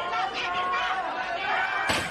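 A metal folding chair crashes down once near the end, over people's voices that run throughout.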